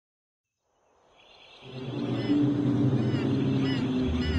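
Silence, then forest ambience fades in over about a second: a steady low rumble with short bird chirps repeating several times over it.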